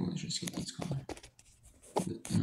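A man's voice speaking indistinctly for the first part, followed by a few short scratchy clicks and rubs close to the microphone about a second in.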